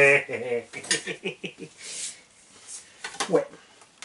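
A quick run of small clicks and clatters of hard plastic being handled on the RC truck, about a second in, then a soft rustle and a few more clicks near the end.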